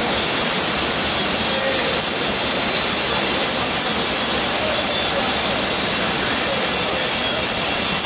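Loud, steady roar of foundry machinery at a stainless steel melting furnace, with a constant high-pitched whine running over it.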